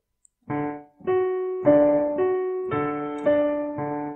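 Yamaha digital piano playing a syncopated ragtime rhythm drill: left-hand bass notes under right-hand triad notes, struck evenly about twice a second in a straight, unswung feel. The notes start about half a second in.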